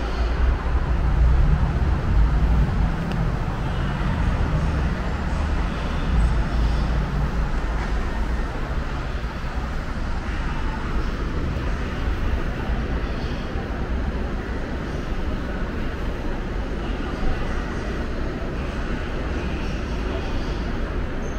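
Steady low rumble of a Daegu Line 3 monorail train running, heaviest in the first few seconds and then settling to an even drone.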